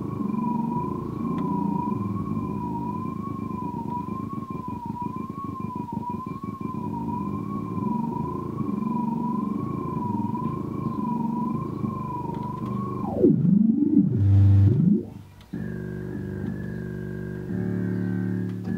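Nord Lead synthesizer playing a held lead note that wobbles slowly in pitch, about once a second, over a sustained low chord. About 13 seconds in, the pitch swoops down and slides up and down. After a brief break, a new sound comes in: a higher held note over a chord.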